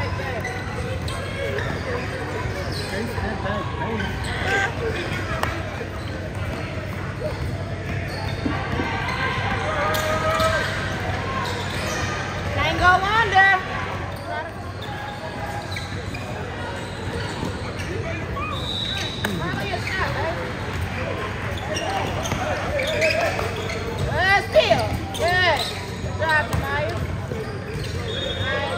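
Live basketball game sounds in a gym: a basketball bouncing on the hardwood court while players and spectators call out. The sound echoes around the large hall.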